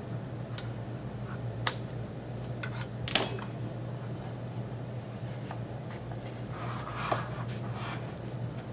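Light handling sounds as a styrofoam insert is pried and lifted out of a metal cosmetics tin with fingers and a metal spatula: a few soft clicks and taps, the loudest about three seconds in, and a short rustle near the end, over a steady low hum.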